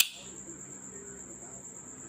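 Bestech Hornet liner-lock flipper knife snapping open: one sharp click at the start as the blade swings out and locks up, a big snap. A steady high-pitched whine runs underneath.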